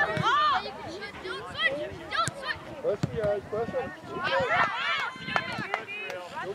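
Overlapping distant shouts and calls of boys' voices across a soccer field, with a burst of several calls together near the middle. A few sharp knocks are also heard.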